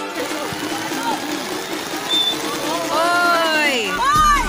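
Steady rain hiss with voices, and a few rising-and-falling calls near the end.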